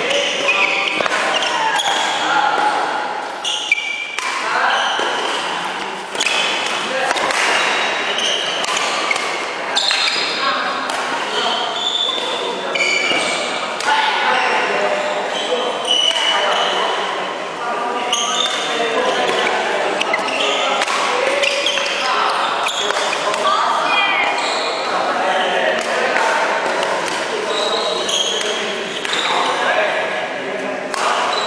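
Badminton doubles rally in a large, echoing sports hall: repeated sharp racket hits on the shuttlecock and footfalls on the wooden court, with voices talking throughout.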